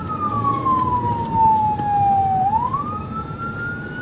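Police car siren wailing, heard from inside a moving patrol car over engine and road noise. The tone falls slowly in pitch for about two and a half seconds, then sweeps quickly back up.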